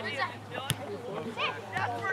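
Mostly speech: a spectator says "nice" at the very start, then fainter voices of players and sideline spectators call out across the field. A single sharp tap cuts through under a second in.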